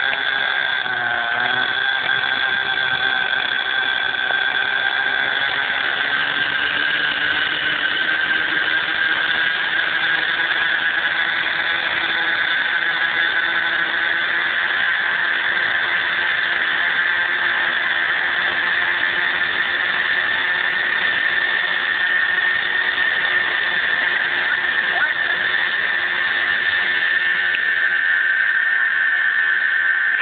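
Radio-controlled Bell 222 scale model helicopter running on the ground, a steady high whine that slowly rises in pitch as the rotor spins up toward lift-off.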